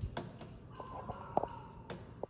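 A faint, drawn-out bird call lasting about a second, heard among a few light clicks.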